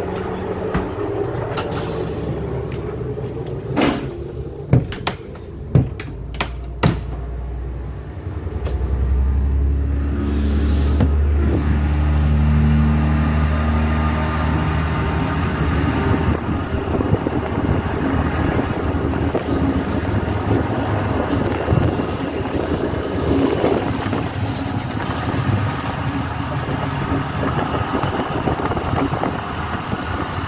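ÖBB class 5047 diesel railcar running, its engine note rising as it pulls harder and gathers speed, then steady wheel and wind noise from the moving train. A few sharp knocks come near the start.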